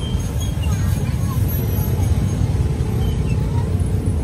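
Busy street noise: a steady low rumble of traffic, with people talking in the background.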